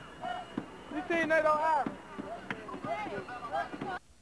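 Excited voices of several people calling out over one another, with a few sharp knocks among them; the loudest calls come a little after a second in. The sound cuts off abruptly at the end.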